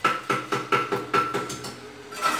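A hammer striking metal in a quick series of about eight blows, each blow leaving a bright ringing note.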